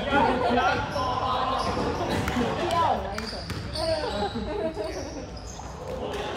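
Basketball bouncing on a hard indoor court floor during play, a few separate thuds, with players' voices calling out in an echoing sports hall.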